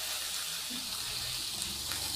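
Meat frying in oil in a hot pan, a steady sizzle.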